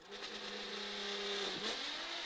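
Nissan GT-R R35's twin-turbo V6 heard from inside the cabin, running with a steady note that dips and climbs again about a second and a half in.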